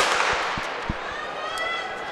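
Starter's gun fired once to start a race, a sharp crack right at the start that echoes and dies away through the indoor arena over about a second.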